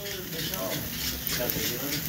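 Faint background voices of people talking, with no clear words.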